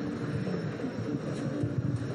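Steady open-air ambience with a low rumble and faint, indistinct voices in the background.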